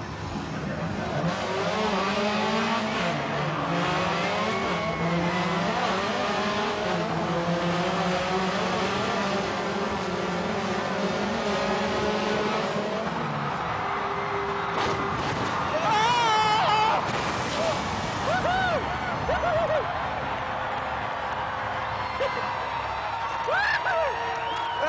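Subaru rally car engine revving hard, climbing and dropping through gear changes for about thirteen seconds as the car accelerates toward the jump ramp, then falling away. A loud hit about sixteen seconds in as the car lands, followed by tyres squealing as it slides on the slippery landing surface.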